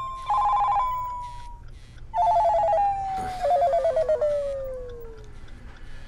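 Mobile phone ringing: an electronic trilling ringtone in three short bursts, the later ones lower in pitch, each trailing off in a falling note.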